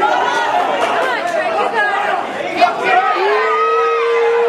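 Crowd of spectators in a gym hall talking and calling out over one another. About three seconds in, one long steady note begins and holds past the end.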